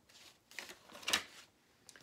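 A picture book's paper page being turned: soft rustling, then one short crisp flap of the page about a second in.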